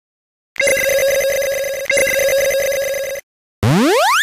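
Cartoon sound effect of a rapidly trilling electric bell ringing in two bursts of about a second and a half each. Near the end comes a quick rising slide-up glide.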